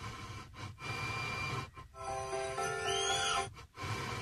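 Car FM radio being tuned up the band, its audio cutting out briefly several times as it steps from frequency to frequency. Snatches of broadcast music and hiss come through between the dropouts.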